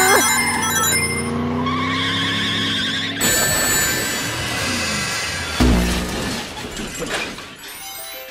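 An edited mix of music and race-car sound: a sustained dragster engine under music with short high chimes like Sonic ring pickups, then a loud low crash thump a little past halfway.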